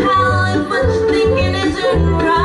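Live acoustic string band playing a reggae groove: upright bass pulsing in a steady rhythm under a sliding melody line from flute, fiddle and voice, with mandolin.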